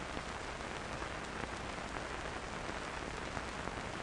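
Steady hiss with a few faint scattered crackles, the background noise of an old film soundtrack; no explosion or other distinct event is heard.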